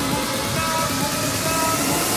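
Electronic dance music: a steady beat with bass and held synth tones, and a hiss rising toward the end, building up to a change in the track.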